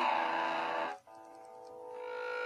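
Electric guitar chord ringing through a tiny all-valve battery combo amp (DL96 valves), cut off abruptly about a second in. A steady hum of several pitched tones then slowly grows louder as the strings are left free: the amp starting to feed back, its speaker sitting close to the guitar strings.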